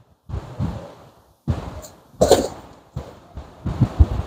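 A man coughing, about four short bursts with quiet gaps between them.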